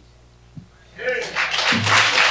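An audience starts applauding about a second in, after a quiet stretch with only a low hum. A voice calls out as the applause starts, and there are a few low thumps.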